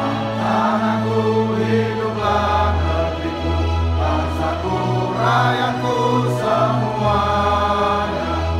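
A roomful of people singing together with instrumental accompaniment, slow and solemn, over sustained bass notes that change every two or three seconds.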